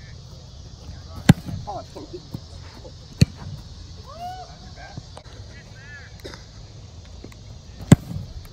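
Footballs kicked off tees: three sharp thumps of a foot striking the ball, one a little over a second in, another about two seconds later, and the loudest just before the end. Faint distant voices are heard between them.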